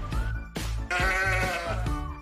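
Background music with a steady beat, and a sheep bleating once about a second in: a single wavering baa lasting most of a second.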